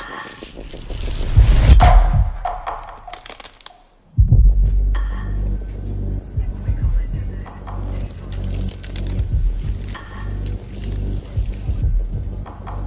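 Film-score music: a loud deep rumble swells and fades almost to silence about four seconds in, then a new cue starts abruptly with a deep, pulsing drone.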